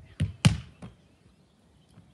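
A Gaelic football kicked against a wall: two sharp thuds about a quarter second apart, the boot striking the ball and the ball hitting the wall, then a lighter knock just under a second in.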